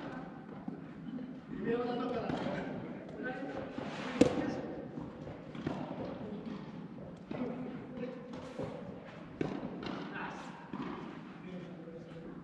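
Soft tennis rally in a large indoor hall: rackets strike the soft rubber ball in several sharp pops about one and a half to two seconds apart, the loudest about four seconds in. Players' voices call out between the shots.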